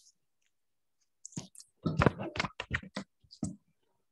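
Microphone handling noise as a microphone is passed on: a quick, irregular run of clicks and knocks lasting about two seconds, starting a little after a second in.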